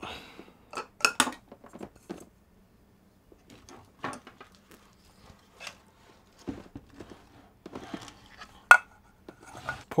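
Scattered light clicks, taps and knocks of hard plastic and metal parts as a liquid-cooling radiator and its hoses are handled on a desk, with one sharp click near the end.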